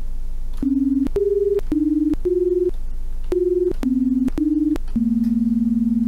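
Home-made software sine-wave synthesizer playing a short run of notes: seven brief notes at changing pitches, then a longer held note. Each note is two sine waves 20 Hz apart, giving a rough, beating tone that is not the prettiest sound. A click sounds at the start and end of every note, and a low hum carries on underneath.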